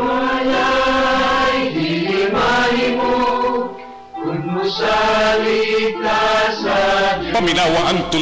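Choral music: voices singing long held chords, in two phrases with a short break about four seconds in.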